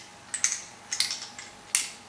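Small ball rolling inside a LEGO maze as it is tilted, clicking against the plastic brick walls five or six times, the sharpest click near the end.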